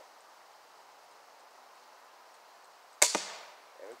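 A crossbow fired once about three seconds in: a sharp snap of the string and limbs as the bolt is released, dying away quickly.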